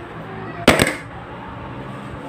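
A plate of noodles with a metal fork on it is set down on a table, giving one short, loud clatter about two-thirds of a second in.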